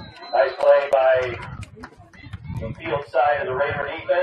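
Loud shouting voices in two long calls, one near the start and one starting a little under three seconds in, with faint clicks between them.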